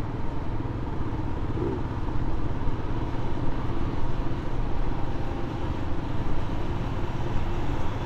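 Motorcycle running steadily at cruising speed, its engine rumble mixed with wind and road noise, heard from the rider's own bike.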